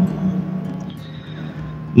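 Soft background music: a steady low drone, quieter once the voice stops, with faint higher notes.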